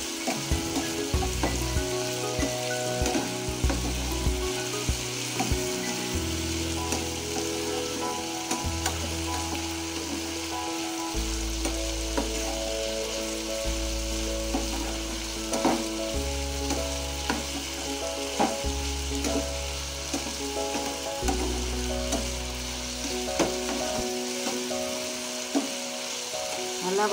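Diced potatoes sizzling in oil in a frying pan, turned now and then with a spatula that gives an occasional scrape or tap against the pan.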